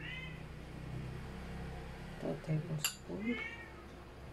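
A cat meowing: a short, high call at the start and another a little after three seconds. A metal spoon clinks once against a glass bowl just before the second call.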